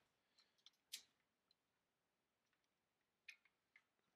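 Near silence with a few faint clicks of plastic LEGO pieces being handled and pressed into place; the clearest click comes about a second in, with two more near the end.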